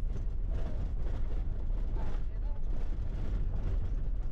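A vehicle's steady low rumble, engine and tyres on a dirt track, heard from inside the cab.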